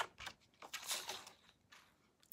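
Sheet of patterned paper rustling and sliding as it is laid onto a paper trimmer: a couple of short scrapes near the start, then a longer soft rustle in the middle.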